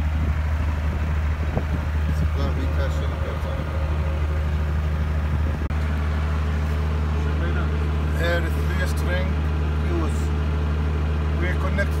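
Diesel generator running with a steady low drone. It is carrying part of the load of an 11 kW solar-hybrid submersible pump.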